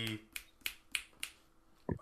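Fingers snapping five times in a steady rhythm, about three snaps a second, as someone tries to recall a name.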